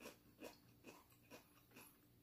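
Faint, regular chewing of a mouthful of food, about two chews a second.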